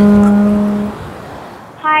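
A conch shell trumpet sounding one long, steady note, used as a ringing telephone; it stops about a second in, leaving a faint hiss of surf.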